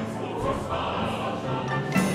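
Choir and vocal soloists singing, accompanied by four pianos and percussion, with sharp struck chords about half a second in and again near the end.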